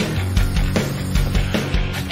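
Rock music with a steady, driving drum beat, about three hits a second over sustained low notes.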